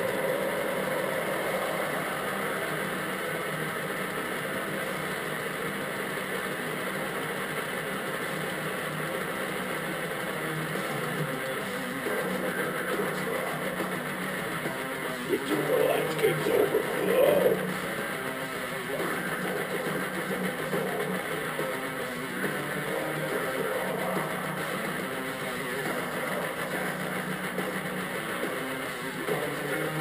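Heavy metal song with distorted electric guitars playing steadily, with a louder passage about sixteen seconds in.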